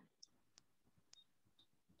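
Near silence, broken by a few faint, brief clicks.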